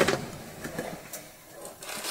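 A storage-cabinet drawer sliding open with light rattles, then plastic zip bags of artifacts being handled: a few faint clicks and rustles.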